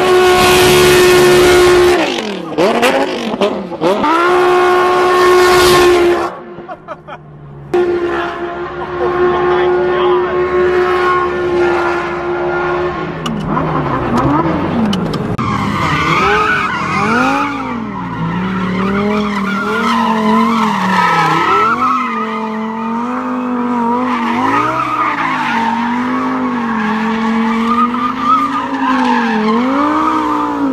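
Supercar engine held at high, steady revs while spinning donuts, with tyre squeal. The sound drops out for a moment about six seconds in, then resumes. From about halfway, a Lamborghini Huracán's V10 revs rise and fall over and over as it drifts.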